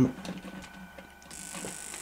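Faint clicks of clip leads being handled. About a second in, a steady high-pitched whine starts as 12 V is connected to a homemade inverter driving a toroidal transformer: the circuit switching on under power.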